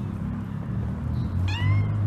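A long-haired cat gives one short meow near the end, while wrestling with another cat.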